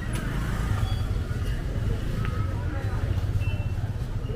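Motorbike or scooter engine running close by in a crowded street, a steady low rumble, with people talking around it.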